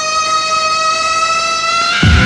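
Dance music breakdown from an early-1990s rave mix: one long held note, rising slowly in pitch, with no drums under it. The full beat comes back in right at the end.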